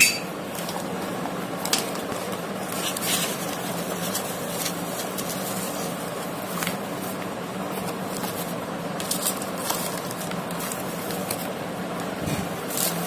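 Tissue paper and a plastic sheet handled on a tabletop: scattered rustles and light clicks over steady background noise.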